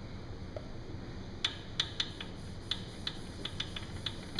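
Wood lathe running with a steady low hum while a turned piece spins in its chuck, with a scatter of light, irregular clicks starting about a second and a half in.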